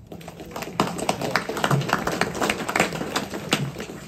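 A few people clapping briefly and unevenly: scattered applause for a speaker who has just finished.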